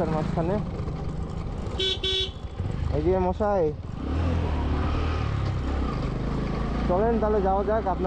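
A motorcycle horn beeping twice in quick succession about two seconds in, over the steady low running of the motorcycle's engine, which grows louder from about halfway through.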